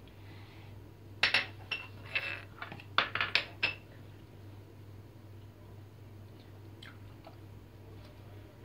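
China saucers and a small drinking glass clinking against each other and the countertop as they are handled and set down: a quick run of sharp clinks in the first half, then only a faint steady hum.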